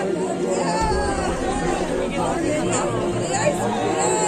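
Voices talking over music, with a low, evenly repeating beat that comes in about a second in.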